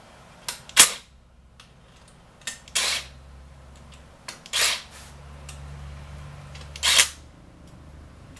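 Kobalt 24-volt cordless drill spinning bolts on an engine block in four short bursts about two seconds apart, each with a brief blip just before it.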